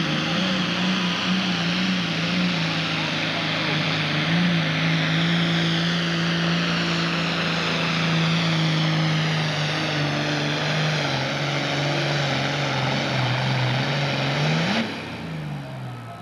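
Turbocharged diesel engine of a John Deere Pro Stock pulling tractor at full throttle under load, its pitch sagging slowly as the sled bogs it down. About 15 seconds in the throttle is chopped and the engine winds down.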